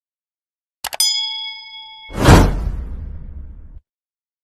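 Subscribe-button sound effects: two quick mouse clicks about a second in, followed by a bell ding that rings for about a second. A louder whoosh then swells and fades away.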